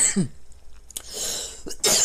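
A man coughing in short bursts, the loudest near the end.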